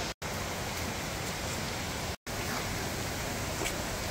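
Mountain creek rushing over rocks in small cascades: a steady rush of water, broken by two brief silent gaps, one just after the start and one about two seconds in.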